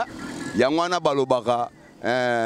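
A man talking into a handheld microphone, with street traffic noise behind him in the first half-second.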